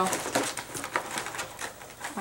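Small cosmetic sample packages being handled in a box: faint clicks and rustling, after a voice trails off at the very start.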